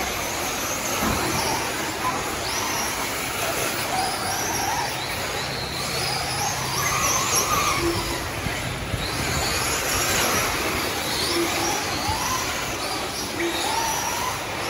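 Several 1/8-scale electric RC truggies racing together, their brushless motors whining up and down in pitch as they speed up and slow down, over a steady wash of noise.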